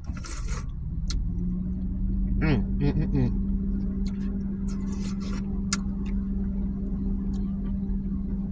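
A car engine comes in about a second in and runs on steadily with a low, even hum. A brief hummed "mm" and a few small clicks sit over it.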